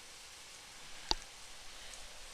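A single short, sharp click about a second in, over a faint steady hiss.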